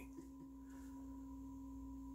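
Faint steady hum made of two pure tones, one low and one higher, held level throughout with nothing else above the room tone.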